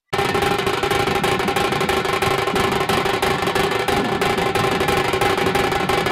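Dhol-tasha troupe drumming: a dense, continuous roll of fast stick strokes on large drums, keeping an even, loud level throughout.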